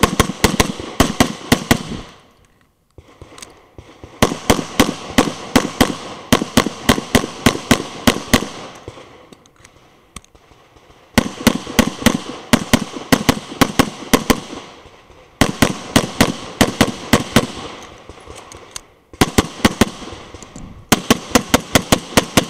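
Rapid pistol fire from a Tanfoglio Stock III competition pistol: strings of quick shots, several a second, broken by brief pauses of a second or so between strings.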